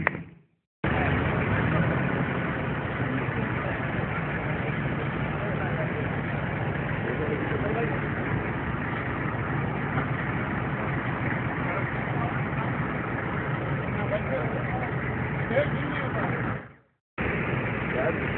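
Car engine idling steadily, with many men talking over it. The sound cuts out for a moment near the end.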